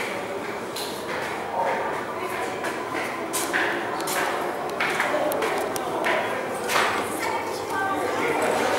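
Indistinct voices talking in a reverberant stairwell, with several sharp clicks scattered through.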